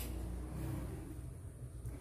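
Low, steady electrical hum from a low-frequency solar inverter running, with one brief click at the very start.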